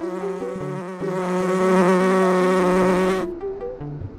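A loud, insect-like buzzing sound effect with a slightly wavering pitch, laid over a plinky synth melody. The buzz cuts off suddenly about three seconds in and the melody carries on alone.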